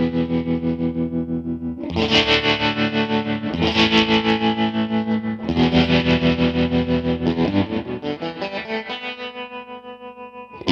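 Dean Custom Zone electric guitar strumming fuzzed chords through tremolo and reverb pedals, its volume pulsing evenly about five times a second. A new chord is struck about every two seconds, and the last one is left to ring and fade near the end.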